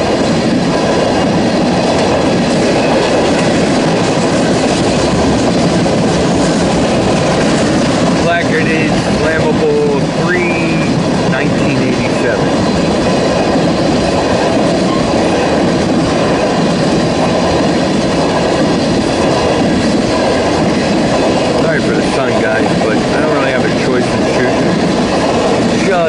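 Empty crude oil tank cars of a BNSF freight train rolling past: steady, loud noise of steel wheels on rail, with a few brief wavering wheel squeals about nine to eleven seconds in.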